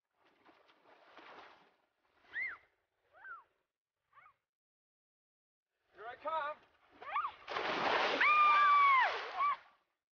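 A high-pitched voice giving several short gliding cries, then a wavering call, and then a long, loud, high scream over a rush of noise near the end that drops in pitch as it stops.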